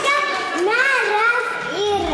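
A child's high voice speaking in a sing-song way, its pitch rising and falling in arches.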